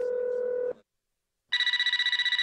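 A telephone: a short steady line tone through the receiver, a pause, then the phone ringing with a rapid trilling ring.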